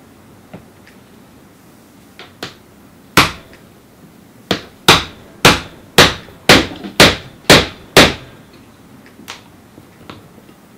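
A hammer drives a steel punch onto a copper cable lug resting on the anvil of a bench vise, crimping the lug onto a battery cable. A few light taps come first, then one hard strike about three seconds in, then seven sharp metal-on-metal blows at about two a second.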